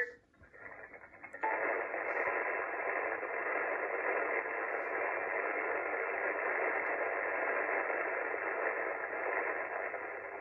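Yaesu FT-991A HF transceiver receiving on the 20 m band in upper sideband: band noise hisses from its speaker. The hiss cuts in suddenly about a second and a half in after a short lull, then holds steady. The receive filter trims it to a thin, narrow sound with no treble or deep bass.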